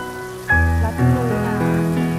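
Water from a small cascade splashing steadily over a rock ledge into a stream, under background music with held notes; a deep note comes in about half a second in.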